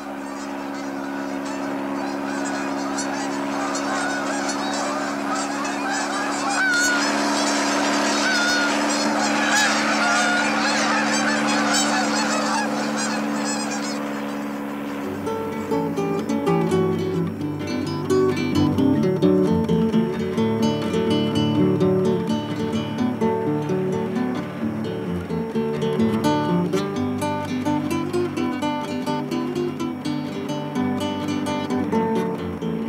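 A flock of geese honking, many calls overlapping above a steady low drone. About halfway through, strummed acoustic guitar music comes in and carries on.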